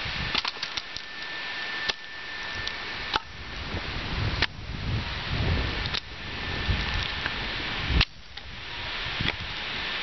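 Axe splitting firewood: sharp chopping cracks as the blade strikes and splits the wood, about one every second and a half, with a quick few together at the start, over a steady background hiss.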